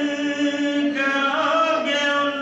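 A man's unaccompanied voice chanting an Urdu nazm (devotional poem) in a melodic recitation, holding long steady notes with a slide in pitch about halfway through.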